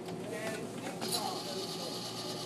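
Faint, indistinct background voices over a steady hum, with a thin high whine setting in about a second in.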